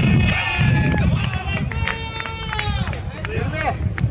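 Several people's voices talking and calling out across an open cricket field, including one long held call about two seconds in, over a steady low rumble.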